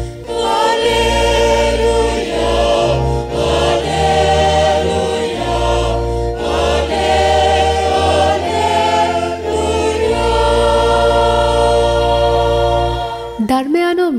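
A choir singing a hymn in sustained chords over a low, held accompaniment, in phrases of a few seconds each. The singing stops shortly before the end.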